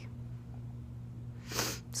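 A woman's short, sharp burst of breath about one and a half seconds in, over a steady low hum.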